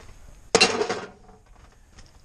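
A single sledgehammer blow on a steel bushing-removal tool, a sharp metallic clank about half a second in that rings for about half a second, driving a worn copper bushing out of its seat on a semi-trailer axle.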